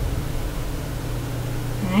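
Steady low hum and room noise with no distinct event, and a voice starting to speak just at the end.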